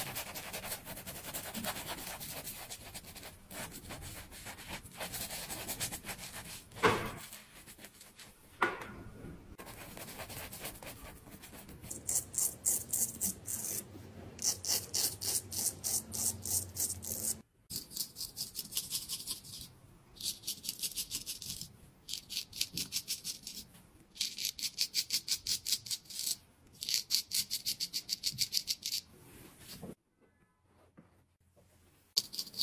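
A shaving brush rubbing lather onto a face and neck, with two sharp taps partway through. Then a straight razor scraping through lathered stubble in quick runs of short rasping strokes, about four or five a second, with brief pauses between the runs.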